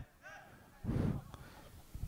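Faint voices in a mostly quiet gap: a brief, distant call early on and a short low murmur about a second in.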